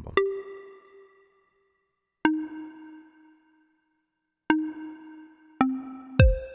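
Synth melody notes previewed one at a time as they are clicked into the FL Studio piano roll. There are four notes, each with a sharp start and a ringing decay: the first two about two seconds apart, then two closer together near the end, with the last one lowest.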